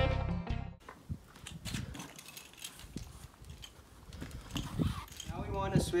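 Acoustic guitar music that cuts off abruptly about a second in, followed by faint scattered clicks and knocks of a hand pump's hose connector being handled and pulled off an inflatable kayak's floor valve, then a man starts speaking near the end.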